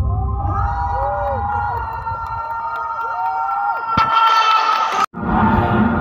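Live concert music heard across a stadium from the stands, with held chords and voices gliding up and down over them, and crowd noise mixed in. The sound grows louder about four seconds in, then cuts out for an instant about five seconds in before the music carries on.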